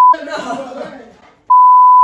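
Two loud bleeps of a steady 1 kHz tone cutting into speech, a censor bleep: the first ends just after the start, the second begins about one and a half seconds in. A man talks between them.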